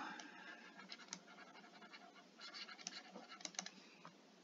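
Faint taps and scratches of a stylus writing on a tablet screen, with scattered small clicks and a busier run of strokes in the second half.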